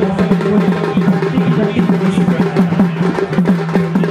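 Drum music: quick repeated drum strokes, several a second, over a steady low held tone.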